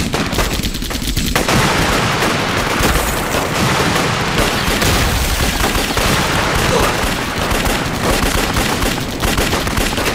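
Dense, continuous battle gunfire: many rifle shots overlapping in a sustained fusillade, with a slightly thinner patch in the first second or so.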